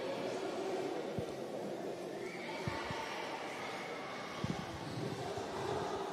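Echoing sports-hall ambience of a futsal match: distant players' and spectators' voices, with a few sharp thuds of the ball, the loudest about four and a half seconds in.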